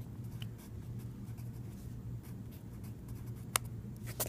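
Pencil writing on lined notebook paper, a soft scratching. Near the end comes one sharp click as the pencil lead snaps from being pressed too hard.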